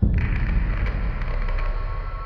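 Space Shuttle rocket ascent at solid rocket booster separation: a loud, deep rocket rumble with crackling that cuts in all at once and eases slightly.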